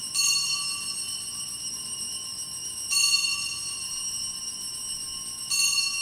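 Altar bells rung three times, each ring high-pitched and ringing on until the next, marking the elevation of the consecrated host at Mass.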